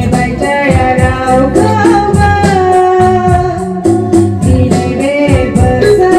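A woman singing a gospel song into a microphone over instrumental accompaniment with a steady beat.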